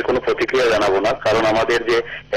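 Speech only: continuous voice-over narration, with no other sound standing out.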